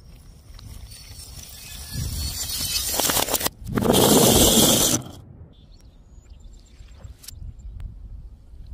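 Small glass jars packed with plastic balls slide down a ramp with a building rough scraping. They then smash one after another on paving tiles, making a loud crashing and clattering burst just over a second long as glass and balls scatter. A few scattered clicks follow.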